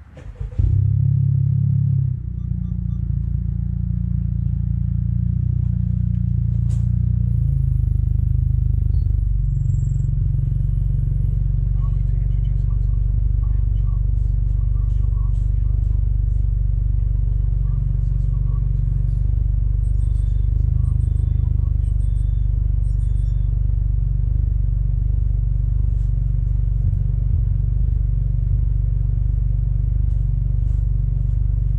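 Honda Civic engine starting about half a second in, flaring briefly, then settling into a steady, low idle.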